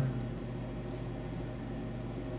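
Steady low hum with faint hiss: room tone in a pause between spoken words.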